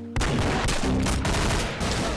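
Rapid video-game gunfire from the Roblox shooter Arsenal on a tablet, a dense burst of shots starting just after the start and lasting almost two seconds, as the player's character is shot and killed.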